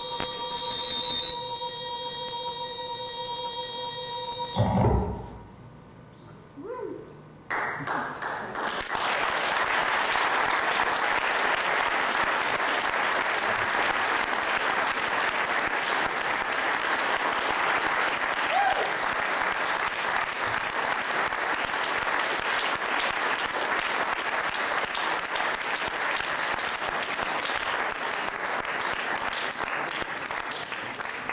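Electronic music of several steady held tones stops with a short low thump about five seconds in; after a brief lull, an audience applauds steadily.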